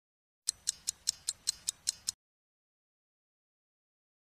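A quick run of nine sharp, even ticks, about five a second, stopping abruptly about two seconds in: a ticking sound effect.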